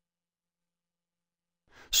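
Dead silence for most of the time, then a faint breath-like sound near the end as speech begins.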